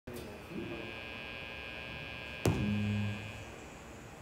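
Steady electrical hum and whine from the band's amplified instrument rigs idling. About halfway through comes a click and one short low note from an amplified instrument.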